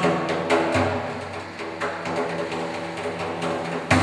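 Quiet live music: steady sustained low tones with a few light taps on a frame drum.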